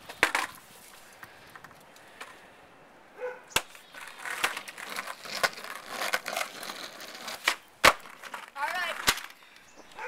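Skateboard on rough asphalt during kickflip attempts: four sharp wooden clacks of the board's tail and deck hitting the ground, the loudest near the end, with the wheels rolling over the rough surface in the middle.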